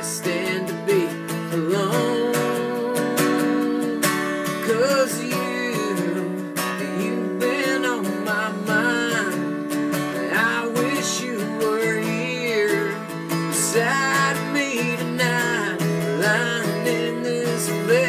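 Acoustic guitar strummed steadily, with a voice singing over it in an outlaw-country ballad.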